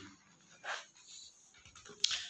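Mostly quiet room tone, with a faint brief noise about two-thirds of a second in and a fainter one just after a second.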